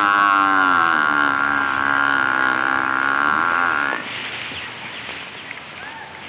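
A white ox lowing: one long moo of about four seconds that drops in pitch as it ends.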